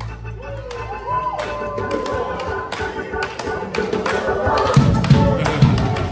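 Gospel choir members clapping their hands unevenly while voices sing and call out over quiet music with no bass. The full band's low end comes back in just after.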